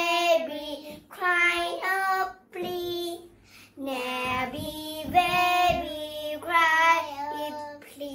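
Two young girls singing an English action song together, in short phrases with brief breaks between them.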